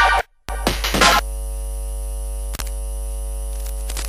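Glitch electronic music: a few short, chopped bursts of sound with abrupt silent gaps in the first second, then a steady, buzzy mains-like electrical hum with a stack of overtones, broken by a brief dropout about halfway through.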